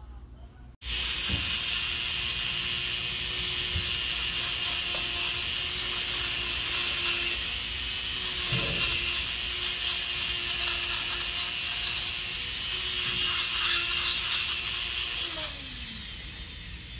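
Electric nail drill (e-file) filing acrylic nails: a steady motor whine under a dense, high grinding hiss. It starts abruptly about a second in, and the motor winds down just before the end.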